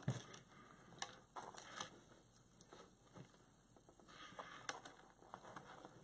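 Faint, scattered clicks and light rustles of plastic zip ties being handled against a wreath-making board.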